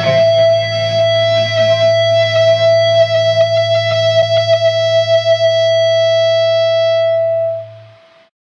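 A rock band's final chord ringing out: distorted electric guitar holding one high note over a low steady bass drone, while the drums play a run of hits in the middle seconds. Near the end the sound fades and cuts off.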